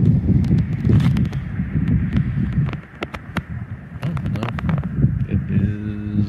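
Wind buffeting the microphone as a loud, uneven low rumble, with scattered sharp clicks throughout and a short low hum near the end.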